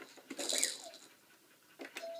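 A small dog gives one short, high whine about half a second in.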